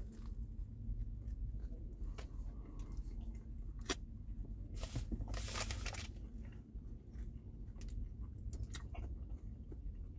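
A person biting into and chewing a meatball sub, with soft crunches and small clicks from the bread crust and a louder noisy stretch about five seconds in.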